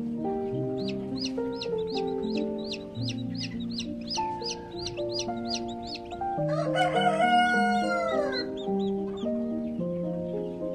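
Background music of held notes, over a quick run of high chick peeps, about three a second, for the first six seconds. Then a rooster crows once, about two seconds long and falling in pitch at the end; it is the loudest sound.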